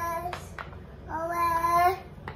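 A toddler's voice singing out long drawn-out vowel notes. One note ends about a third of a second in, then a longer held note starts about a second in and rises slightly at its end. Two light knocks come between the notes.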